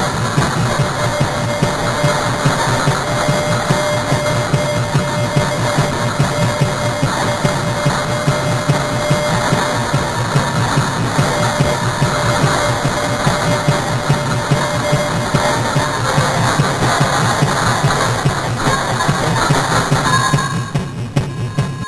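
Loud, dense wall of noise from an experimental noise / musique concrète track, steady throughout and heaviest in the low end, with a faint held tone underneath that fades out about three-quarters of the way through.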